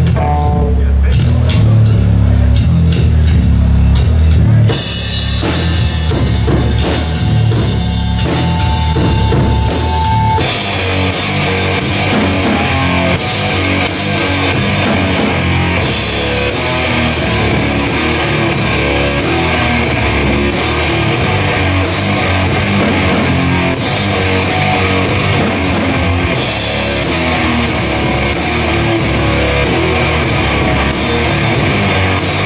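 Live grindcore/death-metal band playing loud: heavy distorted guitar and bass with a drum kit. Cymbal crashes come in about five seconds in, a held guitar feedback tone rings briefly, and the full band drives in at a fast pace about ten seconds in.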